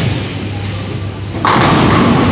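A bowling ball rolling down the lane with a low rumble, then, about one and a half seconds in, a sudden loud crash as it strikes the pins, which clatter on.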